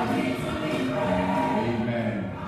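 Gospel choir singing, with long held notes.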